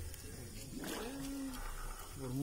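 A person's voice: one drawn-out, wordless call or hum, rising and then held for under a second near the middle.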